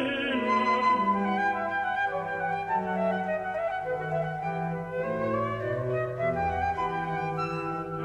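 Baroque transverse flute playing an obbligato melody over a moving continuo bass line. This is an instrumental passage between the tenor's vocal phrases, and the voice comes back in right at the end.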